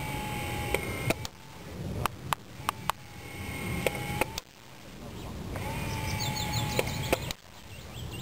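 Small electric motor of an airsoft RC tank gun whining steadily in three stretches, with about eight sharp cracks of 6 mm paint rounds firing and striking a wooden crate.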